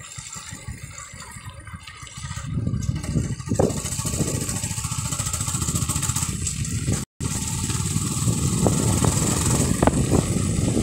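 Running engine and wind noise of a moving vehicle, recorded on board. It is quieter for the first two to three seconds, then louder and steady. The sound cuts out for an instant about seven seconds in.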